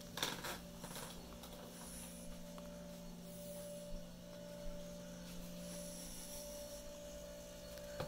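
A steady low electrical hum, with brief rustling and rubbing handling noise in the first second or so as the phone is moved about.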